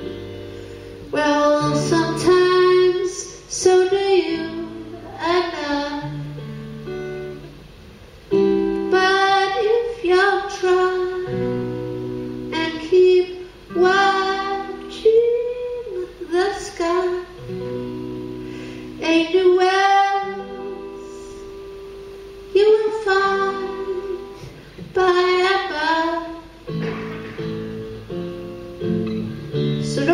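A woman singing a slow song live, accompanying herself on an acoustic guitar, in sung phrases separated by short pauses over held guitar chords.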